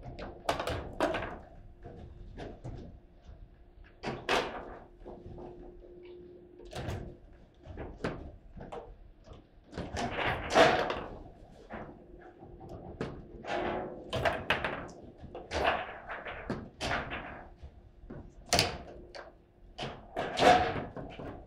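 Table football in play: sharp, irregular knocks and clacks of the hard ball striking the player figures and table walls and the rods being snapped and slid, with the loudest knock about ten and a half seconds in.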